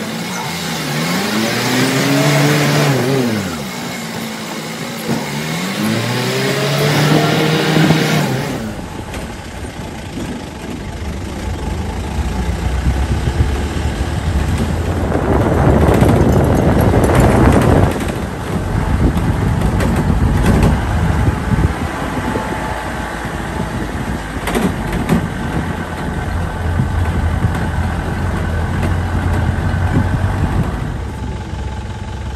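Jeep engine revving up and easing off twice, its pitch rising and falling each time. After a cut about nine seconds in, the engine runs steadily under road noise, which swells for a few seconds in the middle.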